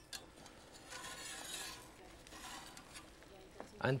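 Faint scraping and rustling from kitchen utensils lifting food at the stove, starting about a second in and lasting about two seconds.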